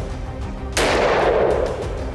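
A single rifle shot about three-quarters of a second in, its report echoing and fading away over about a second.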